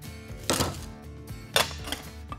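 Two short clattering sounds over background music: vegetables dropped into a metal camping cook pot about half a second in, then the pot's metal lid set on, the louder of the two, near the end.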